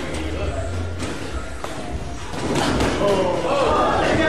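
Unintelligible voices calling out during a sparring bout, louder in the second half, with a couple of sharp thuds about a second in.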